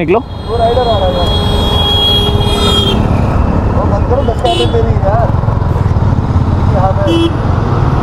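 Motorcycle engine running steadily close by, with other motorcycles riding off past it.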